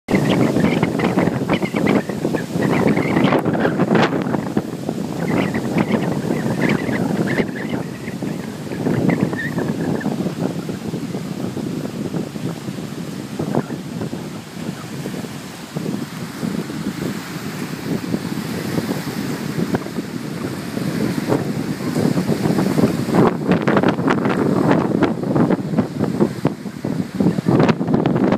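Fifty-mile-an-hour straight-line wind buffeting the microphone in loud, uneven gusts, over choppy lake waves washing against the shore and dock.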